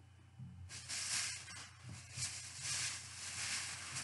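Rustling and rummaging as things are handled and searched through, in uneven swells, with a few light clicks about a second and a half in.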